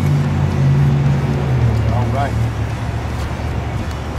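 Steady low rumble of motor traffic, its pitch dropping slightly about one and a half seconds in as a vehicle goes by.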